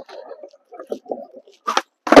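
Skateboard wheels rolling over a concrete skate park floor, then a sharp crack near the end as the tail snaps down to pop a kickflip.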